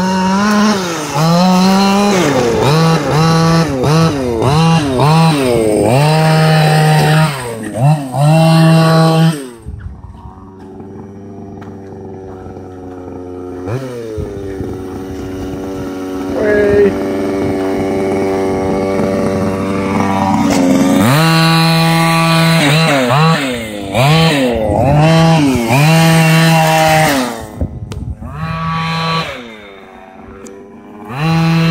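Two-stroke gas engine of a 1/5-scale Losi DBXL RC buggy, revving up and down in quick repeated bursts as the throttle is worked. In the middle stretch it holds a steadier, slowly climbing pitch for several seconds. Then it goes back to sharp revving.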